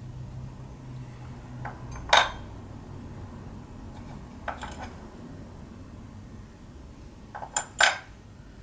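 Small metal machinist's squares clinking and knocking as they are handled in and out of their fitted wooden case: one sharp clink about two seconds in, a few lighter ones midway, and a quick double clink near the end.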